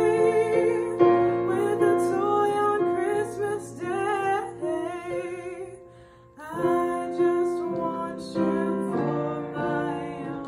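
A woman singing with piano accompaniment, the voice wavering with vibrato on held notes. About six seconds in, the singing pauses briefly, then picks up again.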